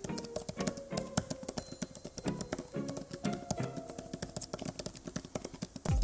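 Typing on the Samsung Galaxy Tab S9 Ultra Book Cover Keyboard: a quick, irregular run of light key clicks over background music.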